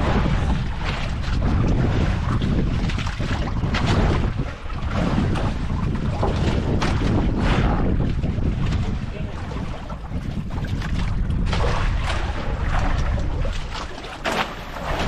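Wind buffeting the microphone over the wash of the sea around an outrigger boat: a steady, rumbling rush that swells and eases.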